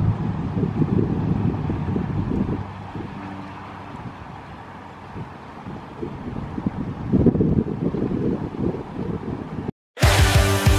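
Wind buffeting an outdoor microphone, a gusty low rumble. It eases off in the middle and picks up again about seven seconds in, then cuts off suddenly just before the end.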